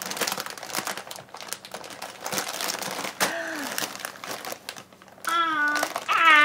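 Plastic snack bag of cheese puffs crinkling continuously as a baby grabs and handles it. There is a short pitched vocal sound about three seconds in and a drawn-out call near the end.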